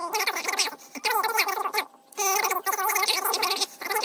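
A voice talking, sped up so that it sounds high-pitched and garbled, with short pauses.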